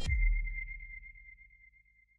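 Logo sting sound effect: a low boom with a single thin, high ringing tone, both fading away over about two seconds.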